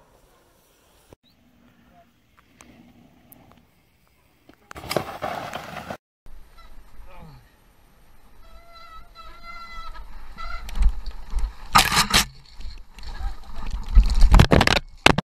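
Helmet-camera mountain-bike ride down a snowy forest trail: rolling and rattling noise, a tone with several pitches held for about two seconds midway, then loud knocks and clatter from the bike near the end. Before that, near quiet with a short loud rush of noise about five seconds in.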